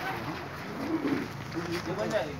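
Indistinct voices of people, with short low pitched sounds about a second in and again near the end.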